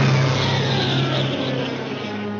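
A sudden, loud cartoon crash effect: a cymbal-like wash that hits just at the start and fades slowly over about two and a half seconds, over a held low note from the studio orchestra.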